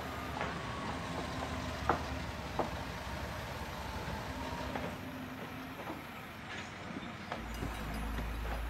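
Steady low outdoor rumble with a few sharp knocks in the first three seconds, and a faint sustained tone that slowly falls in pitch.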